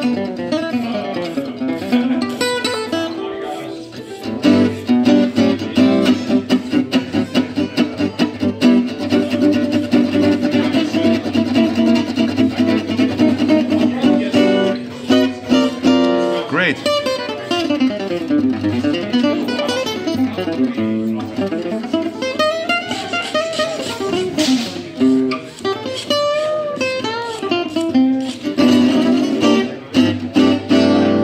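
Oval-hole gypsy jazz (Selmer-Maccaferri style) acoustic guitar played with a pick, freshly fitted with a custom bridge. It starts with fast, rhythmic chord strokes, then moves to quick single-note runs that climb and fall, with one sharp accented stroke near the end. The tone is warmer, with more depth and overtones than before and a little less sustain, though sustain is still there.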